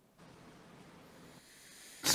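Near silence: faint hiss of the noise floor.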